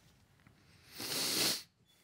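A man's breath: one short exhale, about half a second long, into a close microphone about a second in, over quiet room tone.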